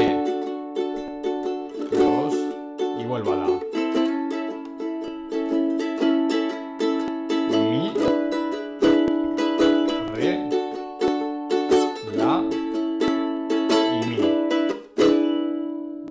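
Ukulele strummed in a steady rhythm, playing a 12-bar blues progression in A major with plain open chords (A, D and E7). The last chord is struck near the end and left to ring out and fade.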